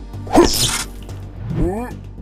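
Short vocal exclamations from a man's voice over an intro jingle: a breathy burst about half a second in and a rising-then-falling cry near the end.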